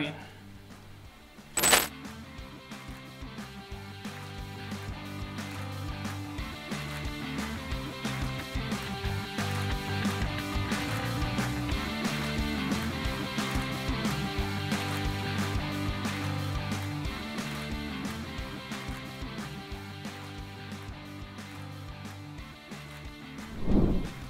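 A single sharp clink, a metal spoon against a ceramic bowl, about two seconds in, followed by background music that swells in the middle and fades near the end.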